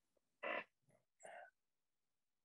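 Two short wordless vocal sounds from a man on a video call, less than a second apart.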